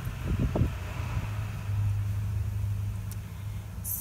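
A low, steady motor hum, like a vehicle engine, swelling about halfway through and easing off toward the end.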